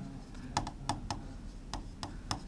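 Pen tip tapping and clicking on the surface of an interactive whiteboard during writing: a handful of light, irregular clicks over faint room hiss.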